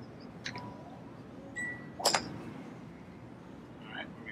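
A short, steady electronic beep of under half a second, followed at once by a sharp click, over a low background rumble.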